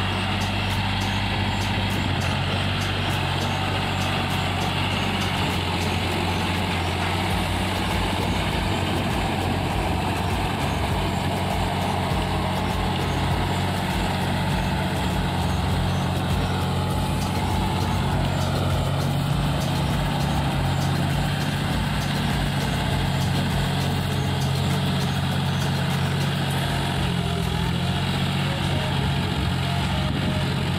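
John Deere tractor's diesel engine running steadily under load as it pulls a rotary tiller through wet paddy soil, its pitch shifting slightly now and then.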